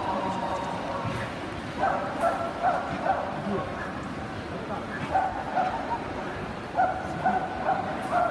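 A dog yelping and whining in three short runs of a few yelps each, over the steady chatter of a crowded hall.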